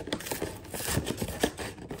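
Cardboard packaging of a trading-card box being handled, with scattered rustling, crinkling and light taps.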